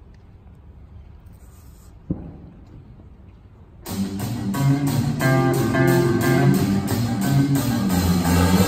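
Quiet hall for about four seconds, broken by a single knock about two seconds in; then a big band comes in suddenly with an electric guitar groove over a steady beat.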